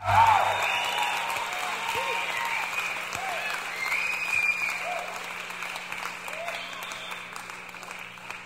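Audience applause with scattered shouts, coming in suddenly at full strength and slowly fading.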